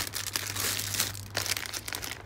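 Clear plastic packaging crinkling in irregular crackles as bagged squishy toys are handled, over a low steady hum.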